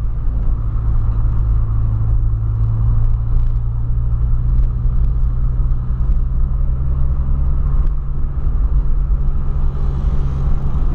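Inside the cabin of a 2008 Volkswagen Polo 1.6 sedan on the move: a steady engine hum with road rumble while it cruises at an even pace, the engine note holding level without revving.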